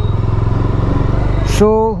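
Motorcycle engine running steadily at low speed, heard from the rider's seat, with an even low throb.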